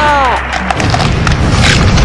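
A shout falls away, then from under a second in a loud, dense crackling and rumbling noise: an edited-in explosion sound effect.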